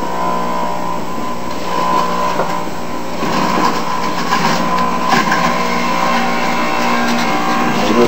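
Jack LaLanne Power Juicer's electric motor running with a steady whine. From about three seconds in, a rougher crackling grind joins it as spinach is fed in and shredded.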